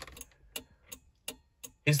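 Hazard-light flasher relay clicking on and off, about three sharp clicks a second, as the hazard lights flash.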